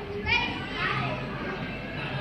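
Children's voices, talking and calling out over the background noise of a busy room.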